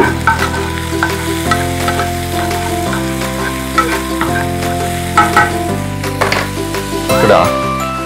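Chicken pieces and onion sizzling as they fry in oil in a nonstick pan, with a spatula stirring and scraping them around the pan. Background music of sustained chords that change about every second and a half plays under the frying.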